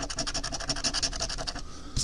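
A coin scraping the scratch-off coating from a lottery ticket in fast back-and-forth strokes, many a second, stopping shortly before the end.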